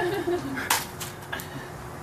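A stick striking a paper piñata: three sharp knocks a third of a second or so apart, starting about two thirds of a second in.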